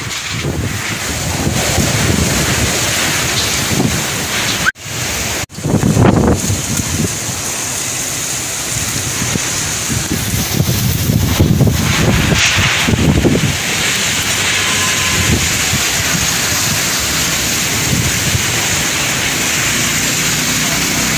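Heavy rain pouring down in a storm with gusty wind, the gusts buffeting the microphone in low rumbling surges. The sound cuts out briefly twice around five seconds in.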